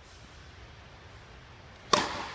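Tennis racket strings striking the ball on a serve: one sharp, loud crack near the end, ringing briefly in the large indoor hall.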